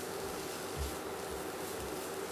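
Spatula stirring and scraping grated carrot in a nonstick frying pan, faint, with three soft low knocks about a second apart and a steady low hum underneath.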